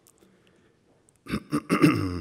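A man clearing his throat into a lectern microphone: a loud, rough run of several short strokes starting about a second and a quarter in, the last of them voiced.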